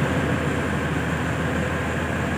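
Steady low mechanical hum of a passenger train standing idle at the platform, its engines and air-conditioning units running, with no change in level.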